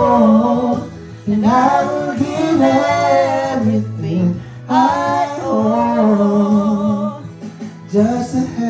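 A man singing a slow ballad in two long, drawn-out phrases with held, wavering notes, over a steady low accompaniment.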